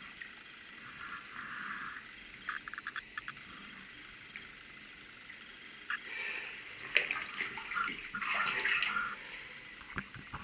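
Bathtub water sloshing and splashing around shoe-clad feet moving under the surface. A quick run of small drips or clicks comes about two and a half seconds in, and louder, uneven splashing follows from about six seconds until near the end.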